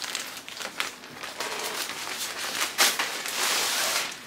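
Plastic clothing packaging crinkling and rustling as a garment is handled and pulled out of it, in a quick run of crackles that gets loudest and densest near the end.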